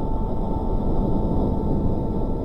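Intro music sting for a logo: a dense low rumbling swell with a steady high tone held above it.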